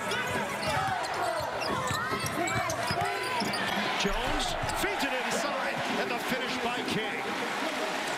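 Basketball bouncing on a hardwood court, short knocks amid the steady noise and voices of an arena crowd.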